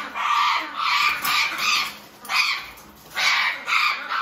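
Double yellow-headed amazon parrot squawking harshly over and over, about six short screeches in quick succession, while being caught in a towel inside its cage.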